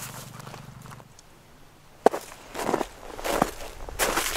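A few crunching steps in snow on ice, with a sharp click about halfway through. Near the end come several short crunches or rustles.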